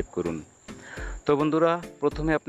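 A voice talking in short phrases, with a brief pause about half a second in. A faint, steady, high-pitched tone runs underneath.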